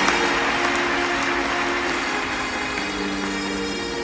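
Arena crowd applauding, the clapping slowly dying away, over background music with long held notes.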